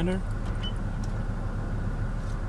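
Steady low hum of the Toyota Alphard idling, heard from inside the cabin. A short high beep from the dashboard touchscreen sounds about two-thirds of a second in.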